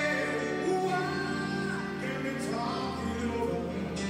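Male vocalist singing a slow ballad over his own piano accompaniment, heard live in an audience recording of a concert.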